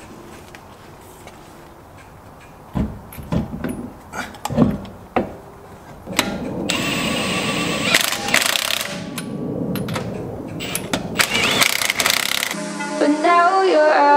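A wheel and tyre knocking as it is set onto the car's hub, then a cordless power tool whirring in short runs as it spins the lug nuts on. Electronic music cuts in suddenly near the end and is the loudest sound.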